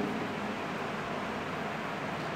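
Steady hiss of background noise, even and unchanging, with no other sound standing out.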